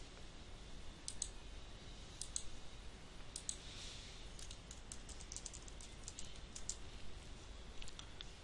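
Faint clicking of a computer keyboard and mouse, in short scattered groups and busiest in the second half, over a low steady background hum.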